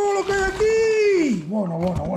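A person's voice drawing out a long exclamation on one held pitch, falling away about a second and a half in, then a shorter, lower, wavering vocal sound.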